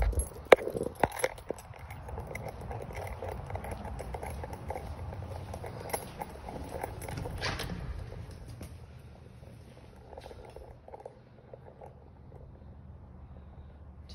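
Keys and a front-door lock being handled, a few sharp clicks and rattles in the first second and a half, over a low rumble. About seven and a half seconds in comes a brief louder rush as the front door opens; after that it is quieter, with faint scattered ticks of footsteps indoors.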